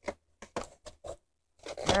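A few light clicks and taps from handling an open case of coloured pencils, then a voice begins near the end.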